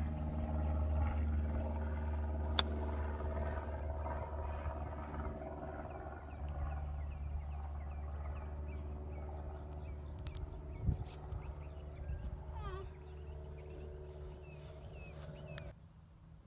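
Golf cart running with a steady low drone that slowly fades and cuts off just before the end, with a single sharp click about two and a half seconds in. Birds chirp faintly in the last few seconds.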